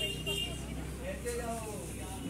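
Voices talking over a steady low background rumble, with a short high tone at the start.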